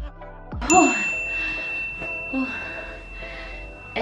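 A timer chime dings once about a second in, marking the end of a 30-second plank, and its high tone rings on steadily for about three seconds.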